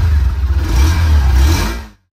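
Hero Xtreme 160R motorcycle's single-cylinder engine running at raised revs, loud and steady, cutting off abruptly near the end.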